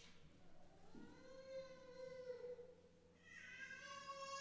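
A faint high-pitched voice making two long, drawn-out notes that bend in pitch, one about a second in and another near the end.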